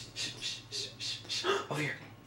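A person's wheezing laughter in quick breathy gasps, about four a second, with a short voiced squeak in the second half.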